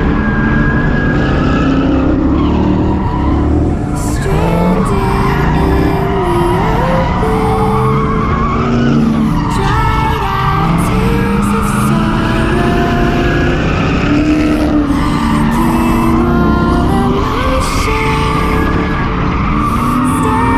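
Drift cars' engines revving up and down over and over as they slide in tandem, with tyres squealing, heard from a car-mounted camera.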